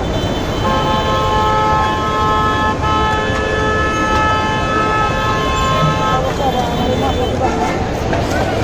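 A vehicle horn sounding one long, steady blast of several tones together, starting just under a second in and lasting about five and a half seconds before cutting off, over constant background noise.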